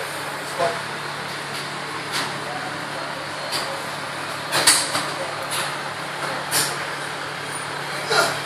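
Large drum-style floor fan running: a steady whoosh with a low hum. Several short, sharp sounds break over it, the loudest about halfway through.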